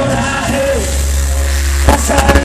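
Live hip-hop concert music played loud through a venue sound system and recorded from the audience. A voice runs over the track at first, then a deep bass note is held from about halfway through, with a sharp hit near the end.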